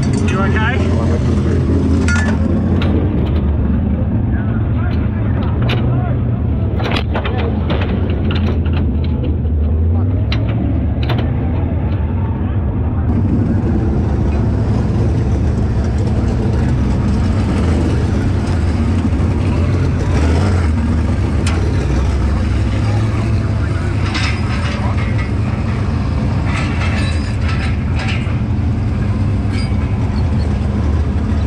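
A vehicle engine idling nearby, a steady low rumble, with scattered clicks and knocks over it.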